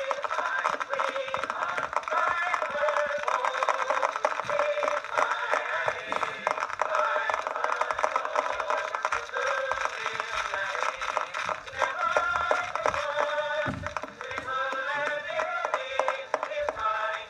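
A mixed chorus singing a medley of old popular songs, played back acoustically on an Edison cylinder phonograph from a blue Amberol cylinder. The sound is thin and lacks bass, with steady surface crackle and clicks throughout.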